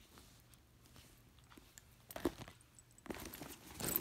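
A hand rummaging among items inside a handbag: mostly quiet at first with one click, then rustling and sharp clicks growing louder near the end as things are moved about in the bag.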